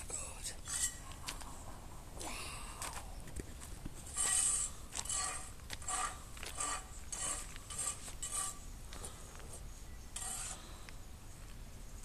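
Metal hand tools clinking and scraping on concrete, an irregular run of short sharp clinks that comes thickest through the middle.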